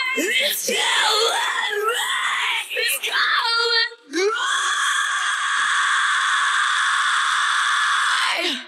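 Isolated female heavy-metal vocals with no instruments: harsh shouted and screamed lines, then a single long scream held steadily from about halfway through.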